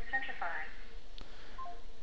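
Automated MFA phone call on a smartphone's speakerphone: a recorded voice with thin telephone sound ends about half a second in. A single click and a brief beep follow as the call ends.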